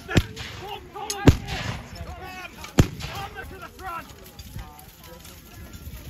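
Medieval black-powder handguns firing: a few sharp reports within the first three seconds, the loudest about a second in, over a faint murmur of distant voices.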